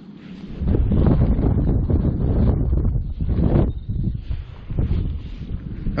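Gloved hands crumbling and rubbing a clod of damp soil and grass close to the microphone, with wind buffeting the microphone; a scratchy, rustling noise that starts about a second in and surges several times.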